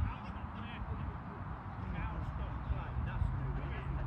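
Steady low rumble of wind on the phone's microphone, with faint voices of onlookers chatting and a few short calls in the background.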